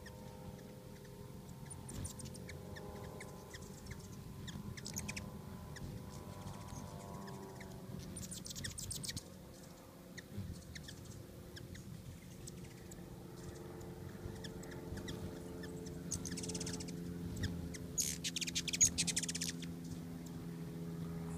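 Several hummingbirds at close range: their wings hum in steady tones that shift in pitch as birds come and go, broken by bursts of rapid, very high squeaky chatter, the longest and loudest near the end.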